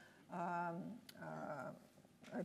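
A woman's drawn-out hesitation sounds, a held "um" followed by a softer "uh", as she pauses mid-sentence.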